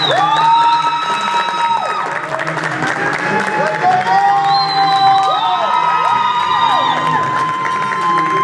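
Audience cheering and applauding: many voices whooping in long, held, rising calls over steady clapping.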